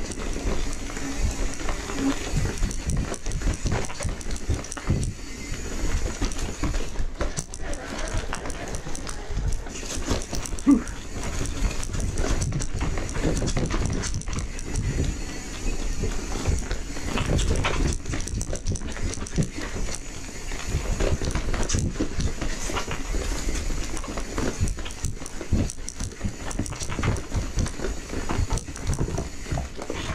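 Mountain bike riding fast down dirt singletrack: a continuous irregular clatter and rattle of the bike over rocks and roots, with tyre noise and low wind rumble on the microphone.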